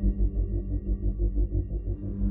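Eerie ambient background music: deep sustained drones with a fast, even pulsing.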